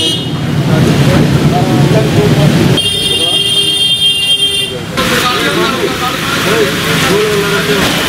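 Street noise in heavy rain over a flooded road: rain hiss and a vehicle's low running sound in the first few seconds, then a steady high horn-like tone lasting about two seconds, followed by people's voices in the background.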